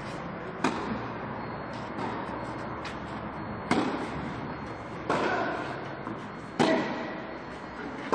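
Tennis ball struck by racket strings in a rally: the serve a little over half a second in, then further sharp hits every second or so, some fainter, with a strong one near the end. Each hit echoes briefly in a covered hall.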